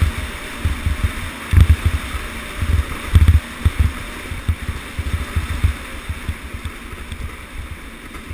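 Sled sliding fast over packed snow: a steady hiss with irregular low thumps, which ease off and grow quieter over the last couple of seconds.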